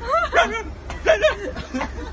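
Three or four short, high dog-like yips and whines in quick succession, each rising then falling in pitch.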